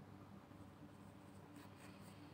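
Near silence with a faint steady hum, and a few faint scratchy rustles of a metal crochet hook drawing acrylic yarn through stitches near the end.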